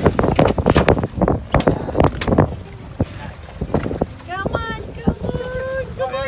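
Wind buffeting the microphone in gusts on an open boat over choppy water. In the second half, voices call out in long cries that rise and fall in pitch.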